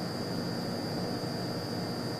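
Steady background hiss of room tone picked up by the lectern microphone, with a thin steady high-pitched whine running under it.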